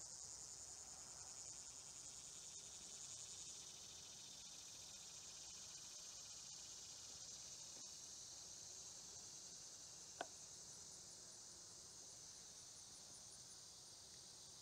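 Faint, steady, high-pitched chorus of singing insects in summer vegetation, pulsing a little in the first few seconds. A single faint click comes about ten seconds in.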